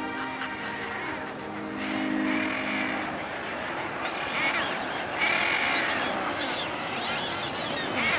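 Background music with held low notes fades out about three seconds in. Under it and after it, a crowded seabird cliff colony calls: many overlapping, repeated arching bird calls that grow busier toward the middle.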